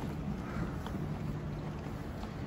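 Steady low rumble with a faint hum, the background noise of a large empty indoor arena, with a few faint clicks.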